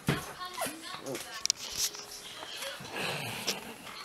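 A toddler's short babbling vocal sounds, mixed with rustling and a few light clicks and knocks from handling.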